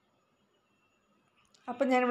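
Near silence, then a woman starts speaking about a second and a half in.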